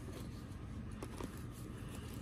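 Faint handling sounds of items in a fabric tote bag: a couple of soft clicks about a second in, over a low steady hum.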